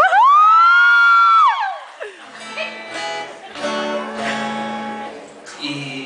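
A shrill held cry from the audience, rising at once, holding for about a second and a half and falling away. Then an acoustic guitar plays ringing notes.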